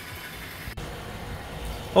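Steady low rumble of an engine running in the background, with a single faint click about three-quarters of a second in.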